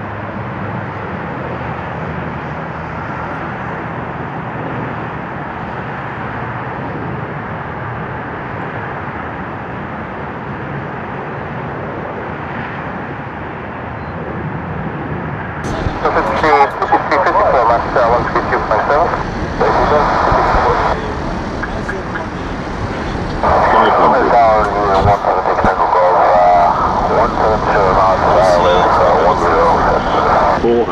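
Air-traffic-control radio audio: a steady radio hiss for about the first fifteen seconds, then, after a sudden change in the sound, voices talking in several stretches.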